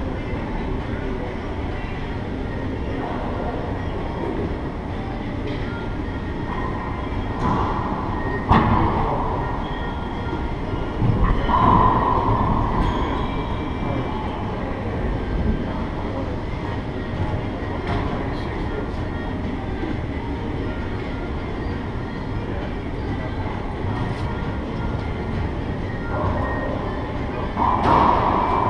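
Steady rumbling noise in an enclosed racquetball court, broken by a few sharp racquetball hits around eight seconds in and again near the end, with faint voices.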